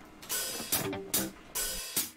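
Drum kit count-in: four evenly spaced cymbal strokes with a light drum hit, about two a second, marking time before the instrumental starts.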